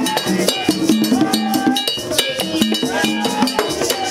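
Vodou ceremonial hand drums, pegged skin heads on painted wooden bodies, played with sticks and bare hands in a fast, steady, interlocking rhythm.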